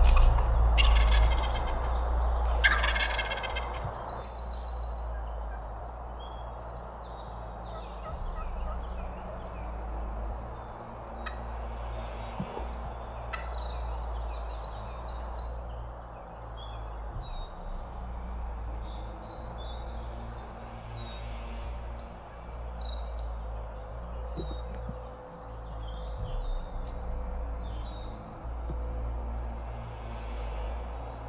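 Wild turkey gobbler gobbling, two rattling gobbles in the first three seconds. Songbirds chirp repeatedly through the rest, over a steady low rumble.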